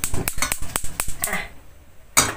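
Gas hob's spark igniter clicking rapidly as the burner knob is turned and held to light the gas. The clicks thin out over the last half-second.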